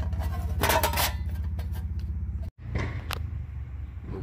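Rustling and scraping as a metal license plate is held against a bracket and its bolts are started by hand, over a steady low pulsing hum. The sound cuts out for an instant about two and a half seconds in, and a single sharp click follows.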